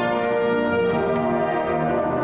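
A school wind band playing, brass-heavy, with tubas, horns and saxophones holding long chords.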